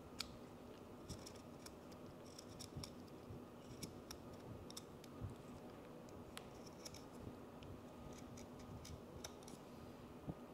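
Faint, scattered little clicks and scrapes of a small blade trimming the rough cut edge of a clear plastic pour-over dripper.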